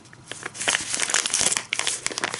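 Soft plastic wrapper of a pack of wet wipes crinkling as it is handled and turned over in the hands, a run of quick crackles starting about a third of a second in.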